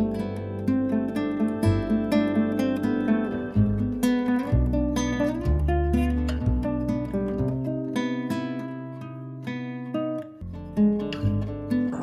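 Background music on acoustic guitar, plucked notes following one another over a bass line, dipping quieter for a moment near the end.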